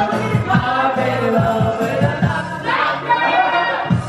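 A woman singing karaoke into a microphone over a pop backing track with a steady beat.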